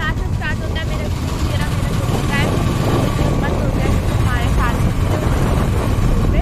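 Steady low rumble of a moving vehicle with wind buffeting the microphone, and short high chirps sounding over it throughout.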